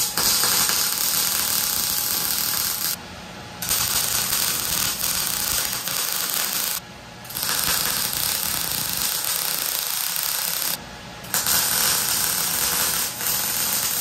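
MIG welder arc crackling and sizzling as beads are laid on steel, in four runs of about three seconds each with short breaks between them.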